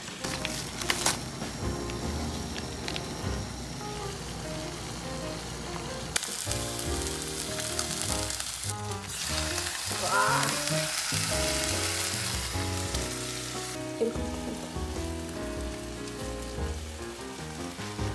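Beef large intestines (daechang) sizzling in a frying pan, the sizzle loudest around the middle, over light background music.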